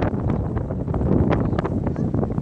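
Wind blowing across the microphone: a loud, steady low rush with small crackles throughout.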